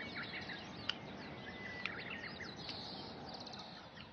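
Small birds chirping and calling, with one thin held whistle in the middle and a quick trill a little before the end, over a faint steady outdoor hiss.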